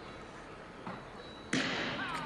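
Speed skating starter's pistol firing once, a sharp bang about one and a half seconds in, sending the skaters off on the start. It is followed by a lingering echo, with the low hush of the hall before it.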